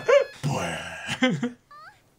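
Two men laughing heartily, the laughter dying away about a second and a half in. A faint, high-pitched voice follows near the end.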